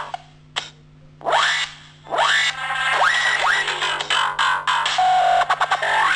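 Distorted electric guitar through effects. A loud chord cuts off into a second of near quiet, then comes a run of upward slides, a held note, and a rapid stuttering on-off of the sound near the end.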